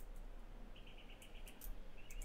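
A faint, rapid chirping trill at one steady high pitch, heard about a second in and again at the end, from a small animal in the background, with a few faint clicks.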